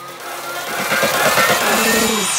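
Electro house build-up: a swelling noise riser and a synth line gliding upward in pitch, growing steadily louder ahead of the drop.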